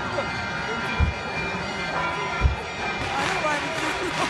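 Music with steady held drone notes over the voices of a crowd, with two short low thumps about a second in and about two and a half seconds in.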